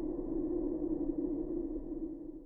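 A steady, muffled low drone with no rhythm or clear notes, fading out near the end.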